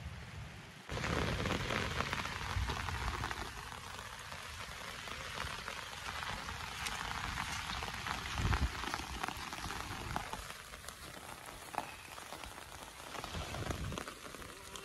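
Steady rain falling, heard as an even hiss with fine drop ticks, with a low bump about eight and a half seconds in.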